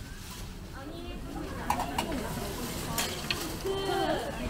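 Food frying at a street-food stall, a sizzle with stirring and a few sharp clinks of metal utensils, among the chatter of passers-by.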